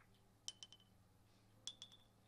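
Billiard balls clicking together, then the pins of a five-pin table being struck and knocked over. There are two quick clusters of sharp clicks with a brief ring, the first about half a second in and the second, louder one near the end.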